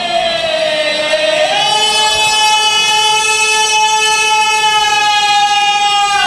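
A man's voice holding one long, high sung note in a devotional recitation, sagging slightly in pitch at first, then rising about a second and a half in and held steady.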